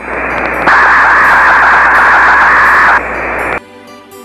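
A very loud burst of hissing static that steps louder about a second in, eases back near three seconds, and cuts off suddenly at about three and a half seconds.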